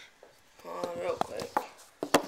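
A male voice holding a wordless, hesitating 'uhh' for about a second, with one light click partway through.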